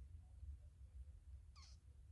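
Near silence: low room hum, with one brief, faint, high falling chirp about one and a half seconds in.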